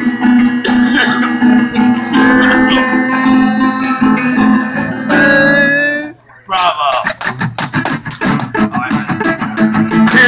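Acoustic guitar played, with long held voice-like notes over it for the first six seconds. The sound drops out briefly, then the guitar is strummed quickly and evenly.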